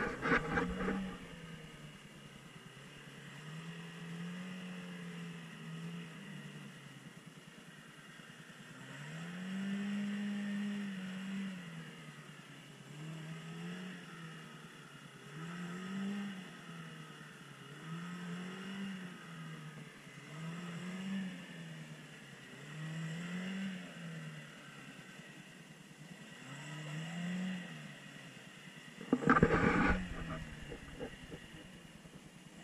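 Chevrolet Niva's four-cylinder petrol engine revving up and falling back again and again, about nine surges a couple of seconds apart, as the car wades slowly through a deep, muddy puddle with patches of ice.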